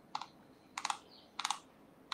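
Computer keyboard keys tapped in short, quiet bursts: a single click near the start, then two quick clusters of about three keystrokes each.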